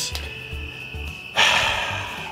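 A short, breathy rush of air about a second and a half in, lasting about half a second: a man puffing on or exhaling from a cigar. Under it, a steady high chirring of crickets.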